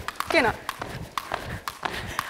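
Two people skipping rope together on a sports-hall floor: the ropes slapping the floor and the shoes landing make a quick, uneven series of sharp clicks, a few per second.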